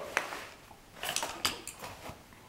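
Sharp metallic clicks and clinks of a hand tool working against a steel door skin as its folded hem edge is prised open: one click just after the start, then a quick cluster of several about a second in.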